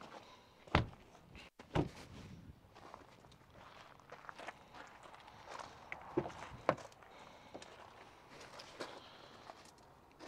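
Footsteps on gravel with a few door thunks from a GMC Canyon pickup, the sharpest two about one and two seconds in. Lighter clicks come from the door handle and latch about six to seven seconds in.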